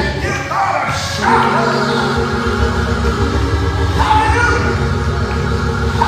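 Church keyboard playing held chords over a rhythmic low bass line, with short bursts of shouting voices about a second in and again near four seconds, as the congregation shouts praise.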